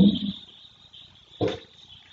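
A pause in a man's lecture speech: the end of a word trails off at the start, and a brief voiced sound comes about one and a half seconds in. A faint steady high-pitched tone sits under it throughout.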